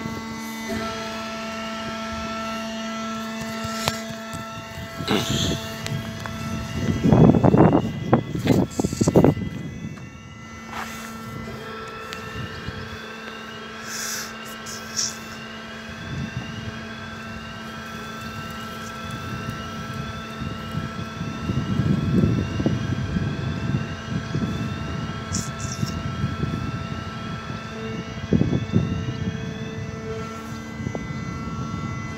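Swing-bridge road barrier warning alarm sounding throughout: steady tones under a sweeping warble that repeats about once a second, sounding with the flashing red stop lights. Loud bursts of low rumble come and go, around 6 to 10 seconds in and again later.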